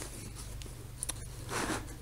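Faint rustling of paracord being handled and drawn against a rolled foam sleeping mat, with a small click about a second in and a soft rustle near the end, over a low steady hum.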